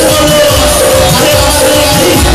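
Devotional music with a voice singing over a steady drumbeat and cymbals, the kind of kirtan sung during a Bhagavatam katha.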